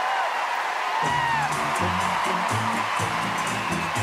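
Audience cheering and applauding, with short rising-and-falling whistles or whoops over the clapping. Background music with a low, rhythmic bass line comes in about a second in.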